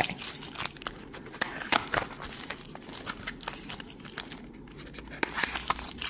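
Clear plastic wrapping crinkling and tearing as it is cut and pulled off a small cardboard box, with scattered crackles and clicks from handling the box. It goes quieter for a moment and then picks up again near the end, as the box flaps are opened.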